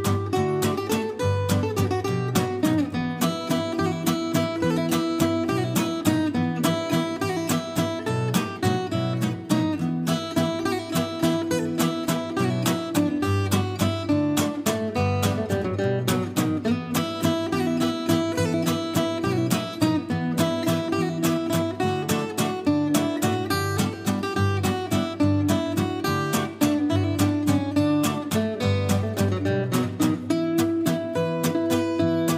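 Two acoustic guitars playing an instrumental waltz live, with dense plucked melody over chordal accompaniment and no singing.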